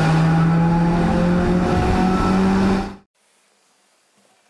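Loud logo-intro sound effect: a dense noisy sound over a low steady drone that steps up slightly in pitch, cutting off suddenly about three seconds in.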